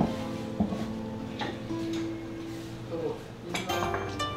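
Tableware clinking at a sushi counter: a sharp clink at the start and another about half a second later, then a few lighter touches, over soft background music.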